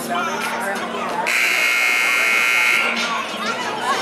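Gymnasium scoreboard buzzer sounding one steady, loud blast of about a second and a half, the signal that ends a timeout, over voices in the gym.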